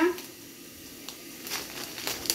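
Plastic bread bag crinkling as it is handled, with a few short rustles about a second in and again near the end.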